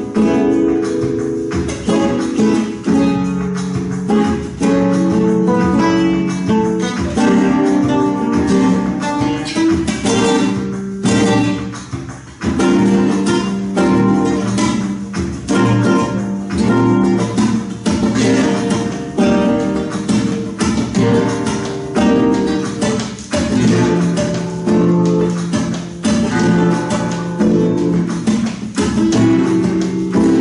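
Two flamenco guitars playing tangos together: rhythmic strummed chords in a steady groove, with one brief dip about twelve seconds in.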